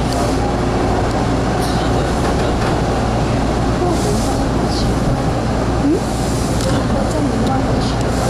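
Bombardier T1 subway train running through a tunnel: a steady, loud low rumble of wheels on track.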